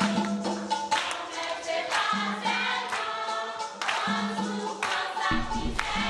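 A youth choir singing an upbeat song together to a steady beat.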